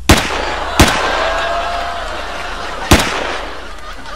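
Three pistol gunshots: two about three-quarters of a second apart at the start, a third about two seconds later, each trailing off in a long echoing tail.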